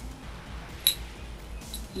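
A single sharp click about a second in, over a low steady hum: the metal beads and chain of a begleri set knocking together as it is handled.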